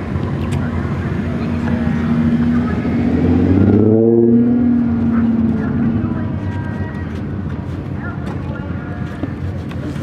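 A motor vehicle's engine running nearby. Its pitch rises and it is loudest about four seconds in, then it eases back to a steady hum.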